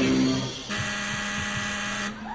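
Background music ends, then an electric game-show buzzer sounds one steady buzz for just over a second and cuts off sharply, signalling that the timed round is over.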